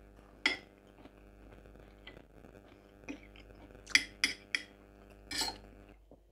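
A metal fork clinking and scraping against a plate as food is picked up: a few short sharp clinks, with a quick run of three about four seconds in.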